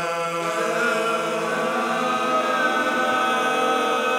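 Gospel choir holding one long sustained chord in several-part harmony, steady throughout.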